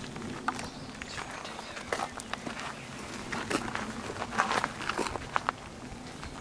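Irregular footsteps and rustling: soft crackles and light taps at uneven intervals, with no steady sound under them.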